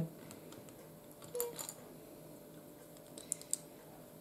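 Small plastic Lego bricks clicking as they are picked through in a loose pile and pressed together, with a short cluster of light clicks a little over a second in and two sharp clicks near the end.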